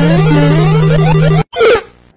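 Loud edited-in musical sound effect: a jumble of rising and falling tones over a steady low hum, cutting off suddenly about a second and a half in, followed by a short second burst.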